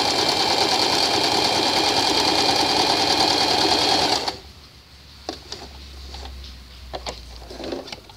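Domestic sewing machine running steadily as it stitches a narrow hem along a curved fabric edge, then stopping abruptly about four seconds in. A few faint clicks and rustles follow.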